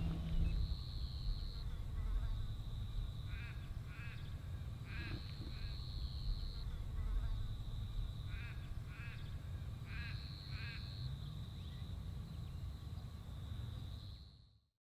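Outdoor bush ambience: insects keeping up a steady high-pitched drone that swells for a second or so several times, with short chirping calls coming in pairs every few seconds, over a low rumble of wind on the microphone.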